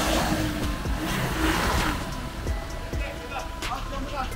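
Nissan Navara pickup's engine running under load as the truck is forced backwards in mud, with a rushing noise that swells over the first two seconds and then eases.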